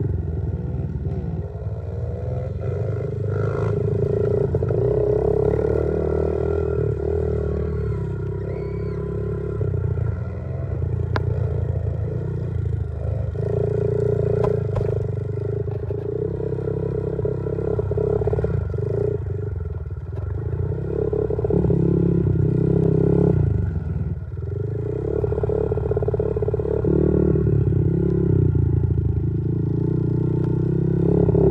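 Honda CRF50 pit bike's small single-cylinder four-stroke engine revving up and down as it is ridden around a dirt track, rising and falling with the throttle.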